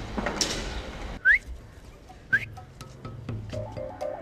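Two short rising whistle notes, about a second apart, then background music starting near the end.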